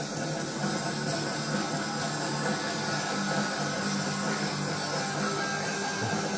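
Rock band playing an instrumental passage led by electric guitar, with no vocal, heard off a television's speaker.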